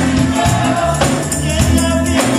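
Gospel choir and a lead singer on microphone singing over a live band, with a low bass line and a steady percussive beat.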